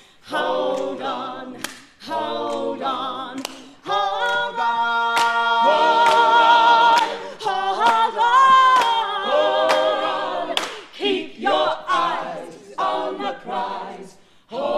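A group of voices singing unaccompanied in harmony. From about four to ten seconds in, the chords are held long, then the singing moves back to shorter phrases.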